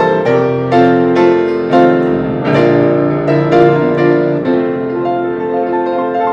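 Grand pianos playing an instrumental duet: full chords struck about every half-second to second, easing into quieter, quicker notes near the end.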